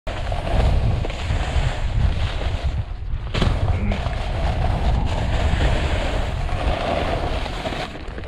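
Snowboard sliding and carving over soft, slushy spring snow, a continuous scraping hiss, with wind buffeting the microphone as a steady low rumble. The scraping eases briefly about three seconds in.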